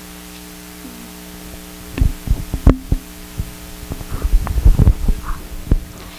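Handheld microphone being handled and passed from hand to hand: irregular low thumps and bumps that start about two seconds in, over a steady electrical hum in the sound system.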